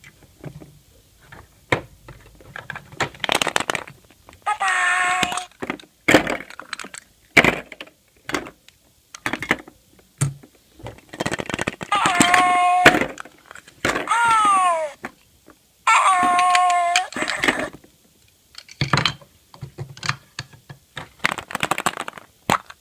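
Plastic surprise eggs and small plastic toys being handled and snapped open: many sharp plastic clicks and knocks. Between them come four short high, voice-like pitched sounds, one of them sliding down in pitch.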